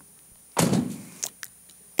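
A car door on an entry-level car slamming shut, played back over the theatre's speakers. A heavy thud about half a second in is followed by two sharp clicks, making a clattery "ka-chunk" rather than a quiet, solid close.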